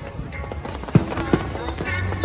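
Aerial fireworks exploding: two sharp bangs, about a second in and again a moment later, over steady background music with voices.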